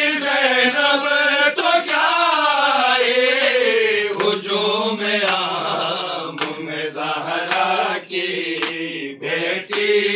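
Men's voices chanting an Urdu noha (a mourning lament) together, in long, slowly drawn-out melodic lines. From about four seconds in, several sharp thumps cut in between the phrases.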